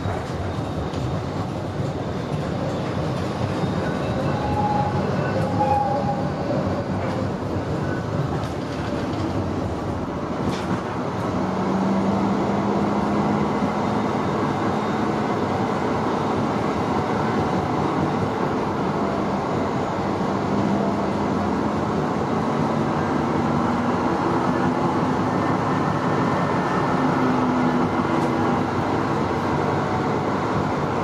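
Running noise inside a VGF Pt-type tram in motion: a continuous rumble of wheels on the rails. About twelve seconds in, a steady low hum sets in and the sound grows a little louder.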